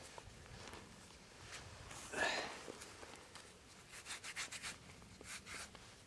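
Fingers rubbing and scraping dirt off a freshly dug quartz crystal: faint, scratchy strokes, coming quickest about four to five seconds in, with one louder soft rush of noise about two seconds in.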